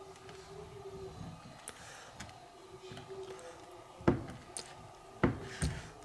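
A knife cutting through a wheel of semi-hard aged cheese on a wooden cutting board: quiet handling with faint ticks, then three sharp knocks in the last two seconds.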